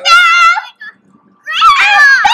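A girl's high-pitched, drawn-out squeals, one trailing off under a second in and another starting about a second and a half in.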